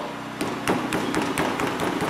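Loose plastic front bumper cover of a Hyundai i30 being worked by hand, giving an irregular series of light knocks and rattles. The bumper cover is loose at its mounts.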